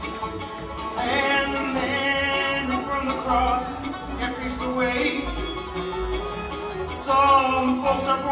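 Bluegrass band playing live, with banjo, mandolin and upright bass under a singing voice.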